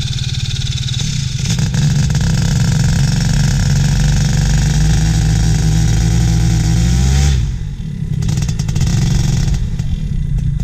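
Paramotor engine and propeller running: it is throttled up about a second in and held at a steady high speed, then throttled back near three-quarters of the way through, the pitch falling as it settles toward idle, dropping lower again near the end.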